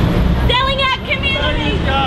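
Indistinct voices talking over a steady low rumble of street traffic.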